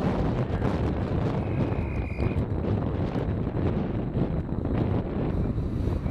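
Wind buffeting the camcorder microphone in a steady, gusting rumble. A short high whistle blast sounds about a second and a half in, as a referee's whistle does when a play ends in a tackle.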